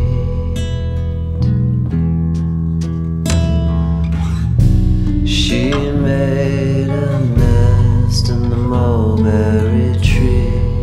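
Music: a passage of a song with guitar and bass guitar and no sung words.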